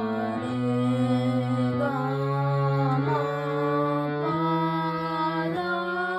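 A Bina Flute harmonium being played: a run of held reed notes with several sounding together, the notes changing about five times, roughly once a second or so.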